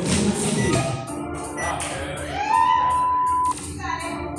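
Workout timer beeping the start of a 12-minute AMRAP: two short countdown beeps a second apart, then a long, loud start beep of about a second that cuts off sharply. Background music plays throughout.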